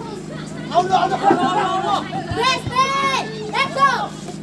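People shouting and calling out during an outdoor football match, with several loud, high-pitched calls in the second half. A steady low hum runs underneath.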